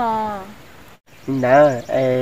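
Speech only: a woman talking, a brief break, then a man talking.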